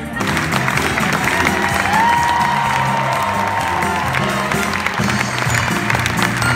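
Theater audience breaking into applause over the show's live band music, with a long held high note rising in about two seconds in and lasting about two seconds.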